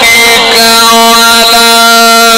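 A male Quran reciter's voice, amplified through a microphone and loudspeakers, holding one long steady note of a melodic (mujawwad) tajweed recitation after a wavering, ornamented run.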